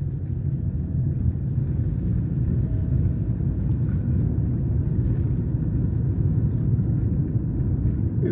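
Steady low rumble of a moving car's road and engine noise, heard from inside the cabin.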